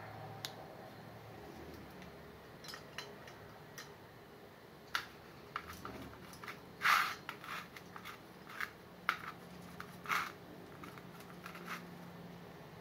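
Handling noise close to the microphone: scattered small clicks and short rustles of clothing brushing near the camera, the loudest rustles about seven and ten seconds in.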